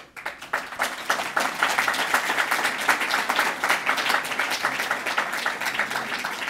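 Audience applauding: many hands clapping in a dense patter that builds over the first second and then holds steady.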